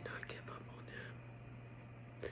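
A woman whispering a word at the start, then faint breathy sounds over a steady low hum.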